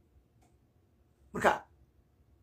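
Near silence, broken by one short word or vocal burst from a man about a second and a half in.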